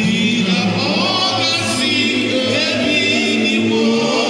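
Live gospel singing by several voices together, with long held notes.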